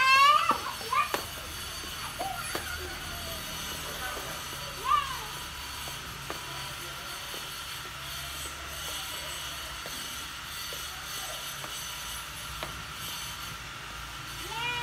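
Young children's voices: excited shouts in the first second and a short call about five seconds in, then fainter scattered calls further off, over a steady low background hum.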